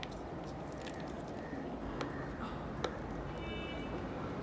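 Light handling of a wrapped gift being lifted out of a cardboard mailing box, against a steady background hiss, with two faint clicks about two and three seconds in.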